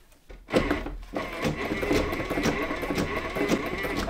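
Sailrite heavy-duty walking-foot sewing machine turned by hand, stitching through eight layers of heavy sail cloth, with repeated clicks and knocks from the mechanism. Under this load it is tougher to get going. It starts about half a second in.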